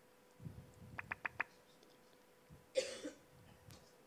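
A single cough near the end, the loudest sound, after four quick, sharp clicks about a second in, over a faint steady hum.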